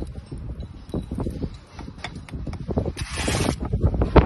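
Bricklaying work sounds: scattered light knocks and taps of a steel trowel and bricks, with a short scraping rasp about three seconds in.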